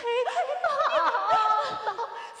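Female Yue opera performer laughing in a high, sing-song stage voice, the laugh rising and wavering and then held on a higher note in the second half.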